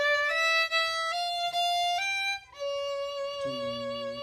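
A solo violin playing a slow line of bowed notes that step upward, then a long held note. Near the end a voice counts "two, three" over it.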